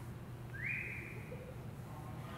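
A single short whistle, one note that slides up and holds for about a second, over a steady low hum.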